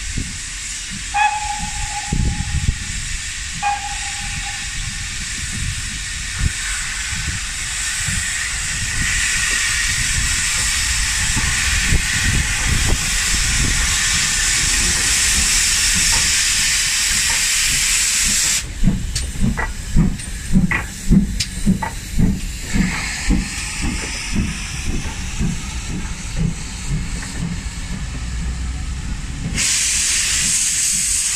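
The steam whistle of GWR Manor-class 4-6-0 locomotive 7827 Lydham Manor gives two short toots. Then comes a loud, growing hiss of steam from the open cylinder drain cocks as the engine passes close by. After it drops away, there is a rhythmic thumping of the coaches' wheels going over the rail joints.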